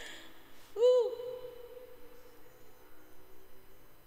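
A single short hooting "whoo" from a woman's voice about a second in. It rises and falls, then holds one steady pitch and fades over about a second.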